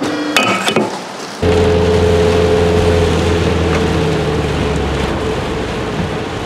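Rain falling on a car's windscreen and roof with the engine running, heard from inside the cabin as a steady hiss over a low hum. It starts abruptly about a second and a half in, after a few sharp knocks.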